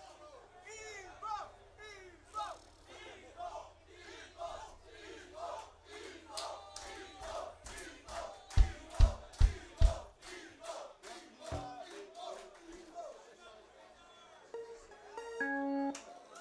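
Rock-show crowd chanting and shouting, with a burst of rhythmic claps in the middle. Four heavy kick-drum thumps come a little past the middle, one more about two seconds later, and a few bass or guitar notes near the end.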